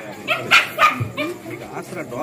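A dog barking a few times in quick succession, over crowd chatter.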